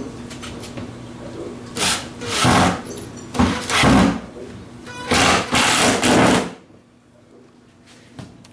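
Cordless drill with a countersink bit boring countersunk screw holes into half-inch plywood, running in several short bursts that stop about six and a half seconds in.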